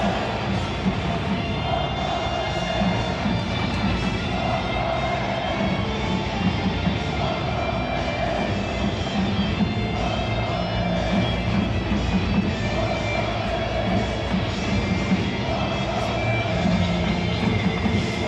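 Music filling a packed football stadium, a short phrase repeating about every two seconds over steady crowd noise.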